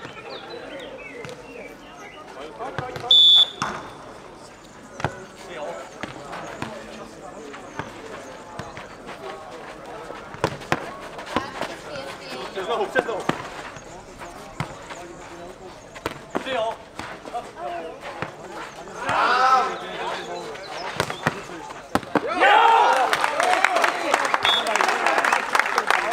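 Nohejbal ball being kicked, headed and bouncing on a clay court during a rally: a string of short thuds and slaps, with players' calls between them. Near the end the voices swell into loud shouting and cheering as the point is won.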